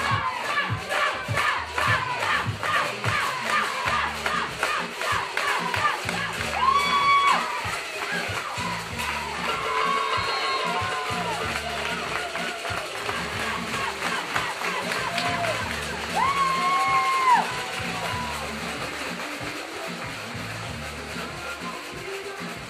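Crowd of children and spectators cheering and shouting, with several long drawn-out shouts, over background music.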